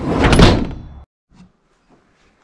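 A VW T2 bus's sliding door running along its track. It swells to its loudest about half a second in and is cut off abruptly after about a second.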